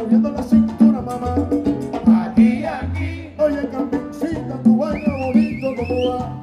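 Live salsa band playing an instrumental passage, with a repeating bass line and a wavering high held note coming in near the end.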